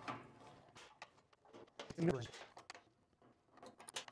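Quiet, scattered light clicks and taps as a T-handle hex key works the laser tube's mounting bracket clamps loose and the clamp parts are lifted off and set down.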